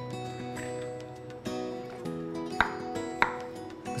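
Chef's knife cutting through avocado onto a wooden chopping board: two sharp knocks of the blade on the board about half a second apart, past the middle, over soft background music.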